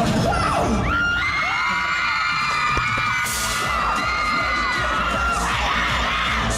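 K-pop stage performance audio: music over a steady heavy bass beat. From about a second in until near the end, a crowd of fans screams in many overlapping high, held and gliding voices.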